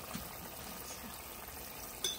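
Onions and garlic paste cooking in a pot of liquid: a faint, steady simmering sizzle.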